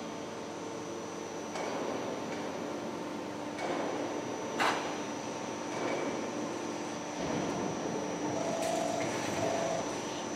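Steady machinery hum from a perforated cable tray roll forming line on test, with a thin high whine over it and a single sharp click a little under five seconds in.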